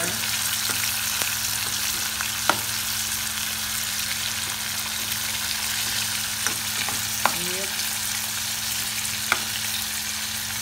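Beef steak, garlic and onion sizzling steadily in hot butter in a nonstick pot. A metal utensil stirs in the pan and knocks against it in a few sharp clicks.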